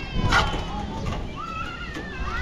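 A faint animal call: a short wavering cry in the second half, over a steady background.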